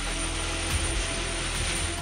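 Steady aircraft engine noise on an airfield: an even, continuous rush with a low hum underneath.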